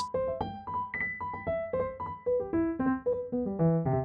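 An arpeggiated piano-like keyboard sound played from the Novation Launchkey Mini MK4's arpeggiator in arp pattern mode: a quick stepping run of notes, with one note tied and held longer about a second in.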